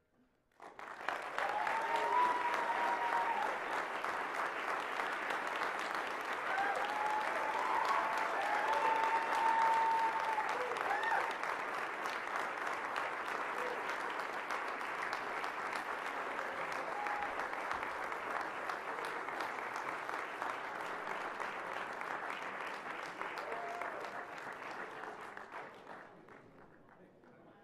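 Audience applauding steadily, with a few voices calling out over the clapping in the first half. The applause starts suddenly about a second in and dies away near the end.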